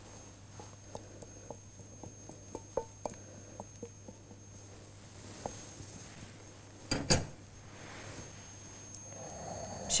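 A metal spoon clinking and tapping against a saucepan while chocolate sauce is scraped out of it: a run of light clinks over the first few seconds, then a sharper double knock about seven seconds in.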